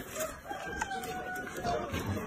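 A rooster crowing once in the background: one long drawn-out call that starts about half a second in and lasts over a second.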